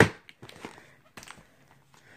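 Faint handling of a plastic VHS clamshell case: a few light clicks and taps as it is turned over and moved.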